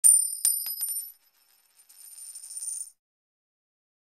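Intro sound effect: a bright, high metallic ring with a few quick clicks in the first second, fading out, then about two seconds in a high shimmering swell that grows and cuts off suddenly.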